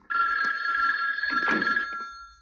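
Telephone bell ringing an incoming call: one long, steady ring lasting nearly two seconds, dying away at the end.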